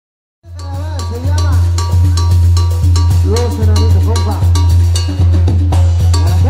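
A Mexican banda (brass band) starts playing about half a second in, straight out of silence: a heavy sousaphone bass under trumpet and clarinet lines, with a regular, sharp percussion beat.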